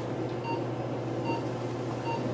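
Short electronic beeps, each a single clear tone, repeating a little more than once a second, twice here, over a steady low hum of running equipment.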